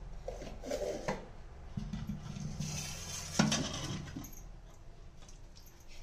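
Stainless steel kitchen vessels being handled: light metal clinks, knocks and scrapes of a steel plate and pot, with one sharp clank about three and a half seconds in.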